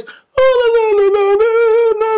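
A man's voice singing one long, high sustained note, a vocal demonstration of singing softly rather than in mixed voice. It starts about half a second in, dips slightly in pitch, then holds nearly level.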